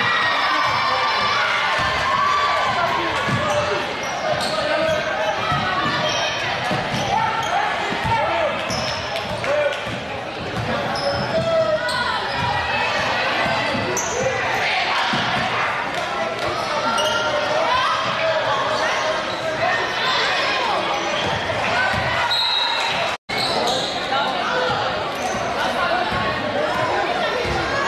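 Basketball game sounds in a large gym: a ball bouncing on the hardwood court and short high sneaker squeaks, under constant crowd and player voices. The sound cuts out for an instant near the end.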